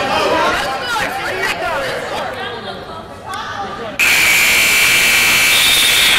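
Gym scoreboard buzzer sounding one loud, steady blast about four seconds in, lasting about two seconds, after a stretch of crowd chatter and voices.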